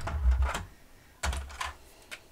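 Clicks and light clatter of craft supplies being handled on a desk, in two short bursts with low thumps against the table.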